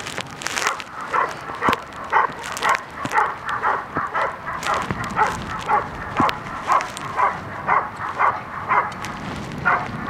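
German shepherd barking steadily at a protection-training helper, about two barks a second, as it guards him after releasing the sleeve.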